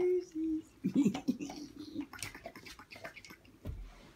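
A woman's sing-song baby-talk voice in a small room, followed by a scatter of short soft clicks.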